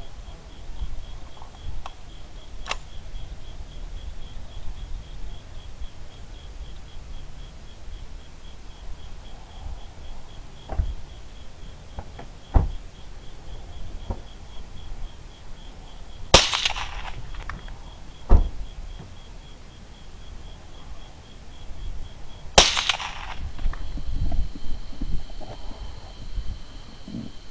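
Two suppressed rifle shots about six seconds apart, each a sharp crack with a short ringing tail, over low wind rumble.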